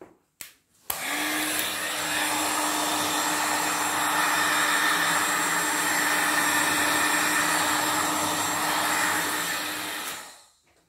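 Electric heat gun switched on with a click about a second in and blowing steadily over a wet acrylic pour, a constant fan hum under the rush of air, winding down at the end as it is switched off.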